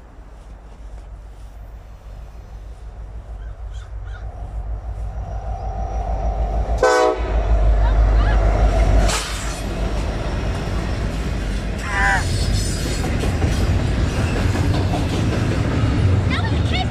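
Diesel freight locomotive approaching and passing at track side, its engine rumble building steadily and loudest about seven to nine seconds in as it goes by, followed by the steady rolling clatter of double-stack intermodal cars.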